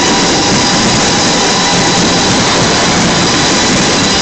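A dense barrage of fireworks bursts, picked up by a phone microphone, blurring into one steady loud roar with no separate bangs.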